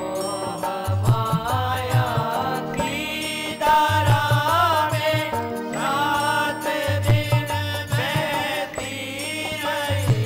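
Devotional chant-like singing with harmonium accompaniment: a voice gliding in pitch over the harmonium's steady held notes, with low drum beats coming in recurring phrases.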